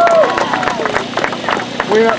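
Scattered handclapping from a small crowd, a rapid irregular patter, with a high voice calling out at the very start.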